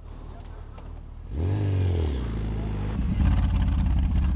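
Motorcycle engine running: about a second and a half in, its pitch rises and then settles. Near the end a louder, deeper rumble with an even pulse takes over, fitting the Suzuki M109R's big V-twin.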